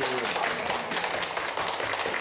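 A small group of people applauding: many quick, uneven handclaps overlapping.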